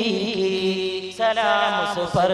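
A man chanting an Urdu devotional salaam in praise of the Prophet Muhammad, drawing out long held notes; the pitch moves to a new note a little past the middle.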